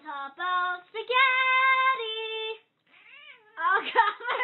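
A cat yowling in a series of drawn-out, pitched cries, the longest held steady for about a second and a half. A short rising-and-falling cry follows, then a quicker run of cries near the end.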